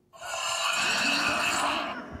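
A loud scream from a cartoon soundtrack, played through a TV and recorded on a phone, starting suddenly and lasting almost two seconds.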